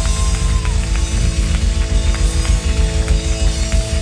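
Live band playing at full volume: busy drum-kit beats with electric bass, and held notes ringing over the top.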